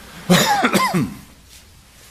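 A man coughing to clear his throat: one short, loud burst lasting under a second, starting about a quarter of a second in.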